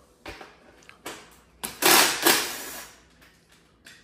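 Handling noises from the dirt bike's plastic bodywork: a few short scrapes and rustles, the loudest lasting about a second near the middle.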